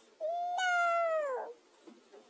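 A high, pitch-shifted cartoon voice giving one long drawn-out cry that sags in pitch at its end.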